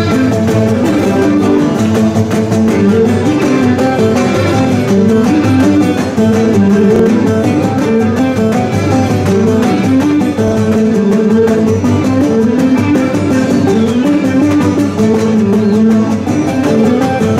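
Live folk dance music led by plucked string instruments: a continuous melody of stepping notes over a steady beat, played for a circle dance.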